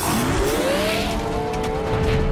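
Cartoon engine sound effect of mecha-beast vehicles revving up and speeding away, its pitch rising through the first second and a half, over background music.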